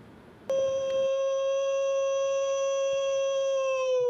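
A man's long ceremonial call through a microphone. It is one held, steady-pitched note that starts suddenly and begins to slide down in pitch near the end.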